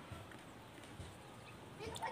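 Quiet background with a few faint clicks, and a voice starting near the end.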